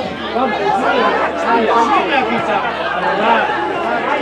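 Several voices talking and calling out at once around a football pitch, overlapping and indistinct.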